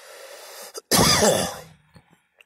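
A man's breathy exhale, then one loud, rough cough about a second in.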